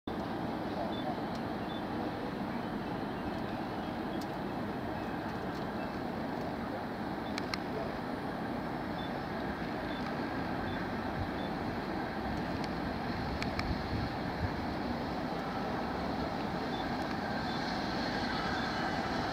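Bulleid Merchant Navy class steam locomotive 35028 Clan Line drifting slowly in with its train: a steady low rumble that grows slightly louder as it approaches, with a few sharp clicks.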